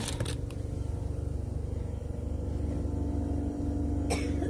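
A steady low hum and rumble with a faint steady tone, the background noise of a store interior. It opens with a few brief crinkles of a plastic wipes packet being set back on the shelf.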